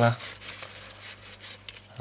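Faint rubbing and rustling of fingers handling a primed plastic model kit, with a few small ticks.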